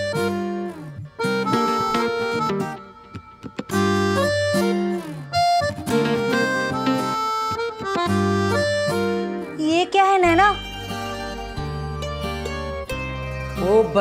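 Background music score: held notes and chords in short phrases, with brief gaps between them.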